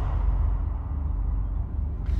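Low, steady rumbling drone of a horror film's underscore.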